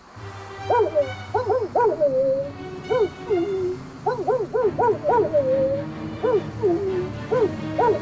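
Cartoon collie dog barking in quick runs of short, arched barks, about a dozen in all, some trailing off in a falling whine, to raise the alarm. A steady low rush of wind and faint music lie underneath.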